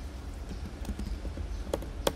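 A few faint clicks of laptop keys, over a steady low background hum, as a line of code is selected and deleted.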